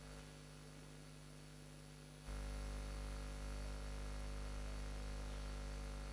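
Steady electrical mains hum and hiss from the hall's sound system, which steps up louder about two seconds in and then holds.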